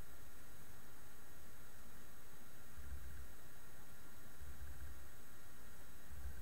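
Steady hiss of room tone and recording noise, with a few faint low rumbles.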